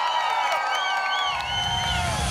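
Studio audience cheering and shrieking, with many high gliding cries layered over one another; a low rumble comes in a little past halfway.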